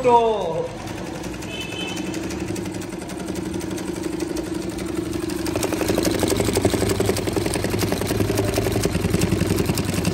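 TK-335 big-hook cylinder-bed industrial sewing machine running and stitching binding tape onto a plastic sheet, a steady motor hum with a fast even stitching rhythm. About halfway through it gets louder as the machine speeds up.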